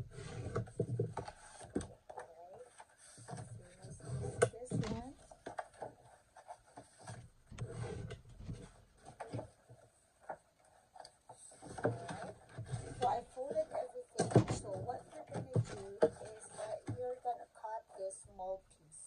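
Sheets of scored cardstock being folded and their creases pressed flat with a bone folder on a desk: a run of rubbing strokes, paper rustles and light knocks.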